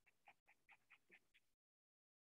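Near silence on a video-call line, with a few very faint short high squeaks in the first second or so, then the audio drops to complete digital silence.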